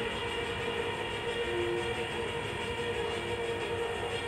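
Music from a video's soundtrack played over room loudspeakers: steady, held chords that shift slowly.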